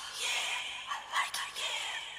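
Quiet intro of a 1997 progressive house/techno track: a breathy, whispered vocal sample over a noisy swell that fades away.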